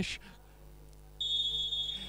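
A referee's whistle blown in one long, steady, high note, starting a little past halfway. It signals the kickoff restart from the centre spot after a goal.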